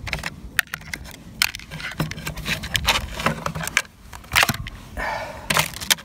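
Handling of small synthesizer units and cables in a wooden carry case: a scatter of irregular clicks, knocks and rattles, with a short rustle near the end.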